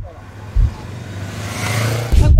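Motorized rickshaw driving past close by: a rushing noise that swells steadily, over a low steady hum, and cuts off suddenly near the end.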